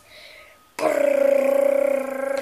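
A boy's voice holding one long, steady-pitched buzzing tone with a rapid flutter, starting almost a second in: a mouth drumroll for suspense before a reveal.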